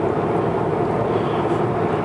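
Steady drone of a car driving at road speed, heard from inside the cabin: tyre and engine noise with no change in pace.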